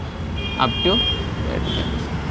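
Whiteboard marker writing, with a brief high squeak about half a second in, over a steady low rumble.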